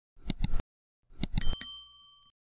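Subscribe-button animation sound effect: a pair of sharp mouse clicks, then another pair about a second in, followed by a short, bright bell ding that rings out.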